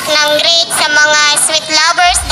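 A young girl singing solo, holding long notes with a wavering vibrato.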